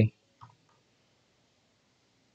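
One faint click from a computer keyboard keystroke about half a second in, then near silence.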